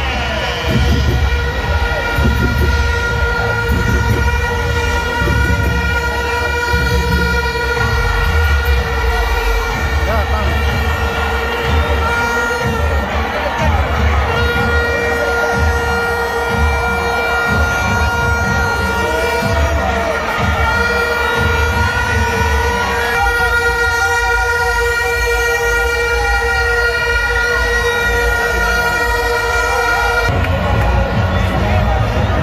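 Dense football stadium crowd with plastic horns blown on one steady held note almost throughout, over continuous crowd noise and low repeated beats.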